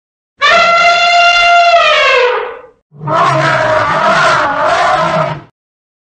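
Elephant trumpeting, two loud calls: a long, steady pitched call that drops in pitch as it ends, then, about three seconds in, a rougher, noisier call over a low rumble.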